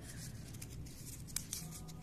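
Faint handling of a sheet of notepad paper, with small ticks and a soft click just over a second in, as the paper is taken hold of to be torn.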